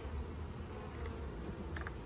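Honey bees buzzing around an open hive, a steady hum.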